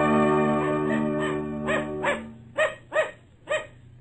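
An organ music bridge holds a chord and fades out about halfway through, as a dog starts barking. Short barks then come about twice a second after the music stops.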